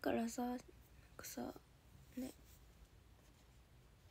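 A young woman's voice murmurs briefly at the very start, followed by a couple of short soft breathy, whispered sounds, then quiet room tone.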